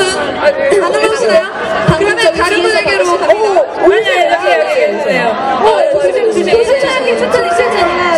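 Several voices talking and calling out over one another, some through microphones, with crowd chatter in a large hall.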